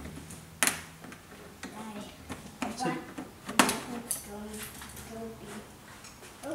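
Two sharp clicks, about half a second in and again about three and a half seconds in, as small plastic trim pieces and screws are worked off the door edge of a pickup truck with hand tools, with faint talk between them.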